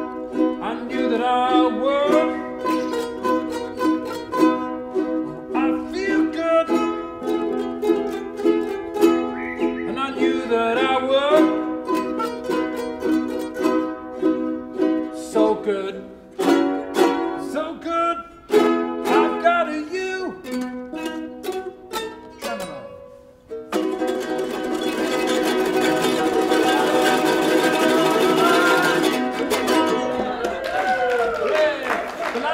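Ukulele ensemble strumming an instrumental passage of an up-tempo pop song in crisp, rhythmic strokes with short breaks. About six seconds from the end it closes on a long, loud strummed chord with a dense noisy wash over it.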